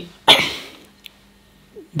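A man coughs once, briefly, about a quarter second in.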